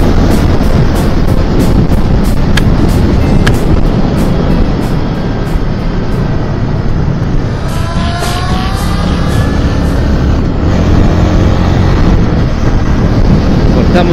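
Zontes V1 350 motorcycle's single-cylinder engine running at road speed, heard from an onboard camera under loud, steady wind rush. Its note climbs briefly about eight seconds in.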